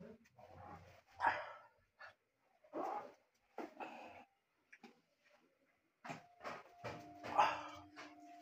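An animal calling in short bursts, several separate calls and then a quicker run of them near the end.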